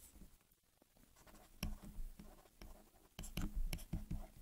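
Stylus scratching and tapping on a tablet screen as words are handwritten in digital ink: faint short strokes and ticks, starting about a second in and coming thicker near the end.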